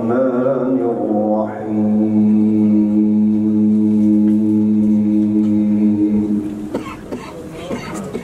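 A man chanting a melodic recitation into a microphone, sliding about at first and then holding one long steady note for nearly five seconds before it fades out. A few faint clicks follow near the end.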